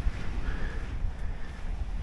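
Sea breeze buffeting the camera microphone: a steady low rumble with a light hiss over it.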